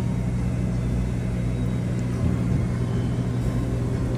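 Steady low machine hum, unchanging throughout.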